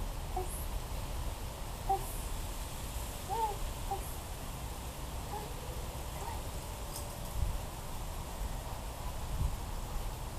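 Siberian Husky puppy giving short, scattered whines and yelps, each a brief bent note, over a steady low rumble.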